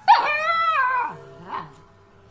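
Two-month-old Alaskan malamute puppy giving one drawn-out howling 'talk' call about a second long, its pitch rising and then sinking, followed by a brief softer sound about half a second later.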